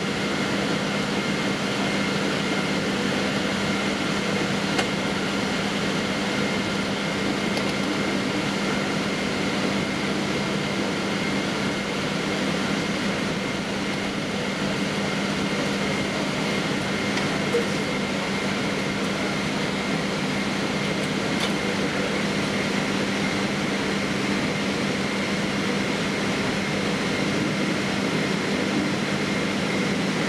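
Steady cabin noise inside a Boeing 777-200ER taxiing after landing: idling jet engines and cabin air conditioning make a constant hum with a few steady whining tones. Two faint ticks come through, about 5 and 17 seconds in.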